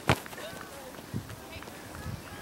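Faint, distant voices of players calling across an open soccer field, with a sharp knock just after the start and a softer thump about a second in.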